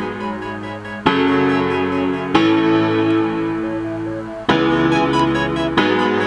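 A beat made in the iMaschine 2 app on an iPhone playing back as a loop: sustained keyboard chords, a new chord struck about every one to two seconds.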